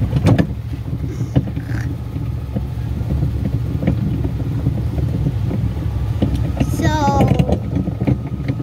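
Small tractor engine running steadily while towing a barrel train over a dirt track, with irregular clattering knocks from the plastic barrel cars bumping along.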